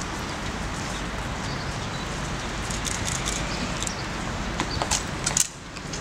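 Outdoor crowd and street background noise, steady and even, with a few short sharp clicks and knocks in the last couple of seconds and a brief dip in level just before the end.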